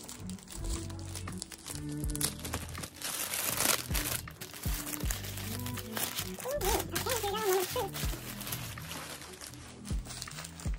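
Deli paper wrapping crinkling and rustling as a sandwich is unwrapped by hand, loudest about three to four seconds in, over background music with a steady beat.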